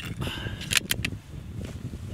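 Metallic clicks of a bolt-action rifle's bolt being worked to chamber a cartridge, with a sharp clack a little under a second in, over a low wind rumble.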